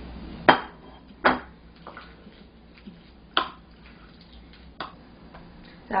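A metal spoon and white ceramic dishes clinking: four sharp clinks spread over several seconds, with fainter taps between, as crushed peanuts are mixed into corn batter in a small ceramic bowl and a plate is set down.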